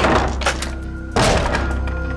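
Two heavy wooden thunks about a second apart from the barred wooden cell, over background music with a low steady hum.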